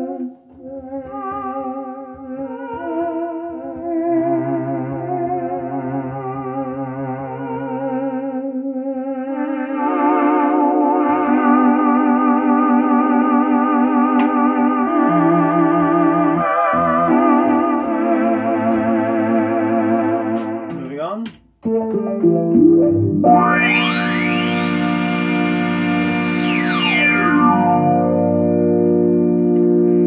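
Oberheim OB-SX polyphonic analogue synthesizer played on its Vox Humana patch: sustained, choir-like chords with a wavering vibrato, getting louder about ten seconds in. Just past twenty seconds the sound cuts off briefly and a brighter, fuller chord comes in with a slow sweep that rises and falls in tone.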